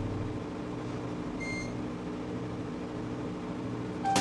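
Elevator car travelling upward with a steady low hum from its machinery. One short, high beep sounds about a second and a half in.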